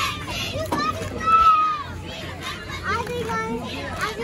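Children's voices shouting and calling out over outdoor chatter, with one long, high held shout about a second in.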